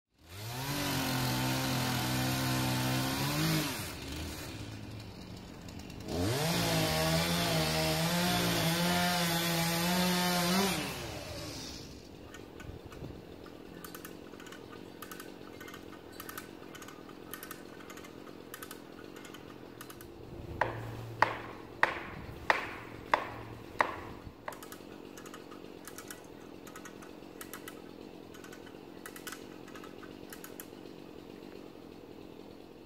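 A chainsaw revving and cutting in two long bursts, the second higher in pitch, then dropping back to a quieter idle. A little past the middle come about six sharp blows in quick succession, struck at the base of the tree.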